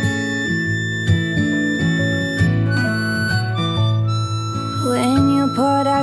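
Crossover harmonica in A playing long, held high notes over an acoustic guitar backing, with a singer's voice coming in near the end.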